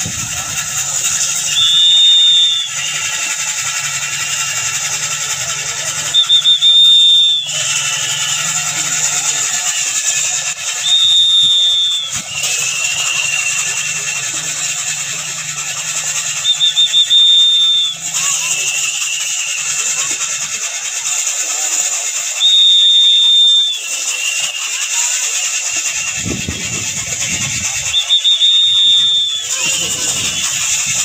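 Bullock-driven wooden kharas flour mill squealing as it turns: a loud, high, drawn-out squeal about every five to six seconds, six times in all, with fainter squeaks between.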